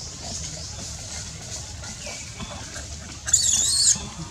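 A baby long-tailed macaque gives one short, shrill, wavering squeal a little after three seconds in. It is the loudest sound here, over a faint steady high hiss.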